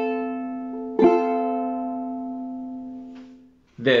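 Ukulele in G-C-E-A tuning strumming an F chord: one strum across all four strings about a second in, then left to ring and fade away over a couple of seconds.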